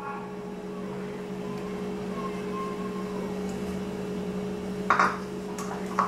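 A steady low electrical or appliance hum, with one brief sharp sound about five seconds in.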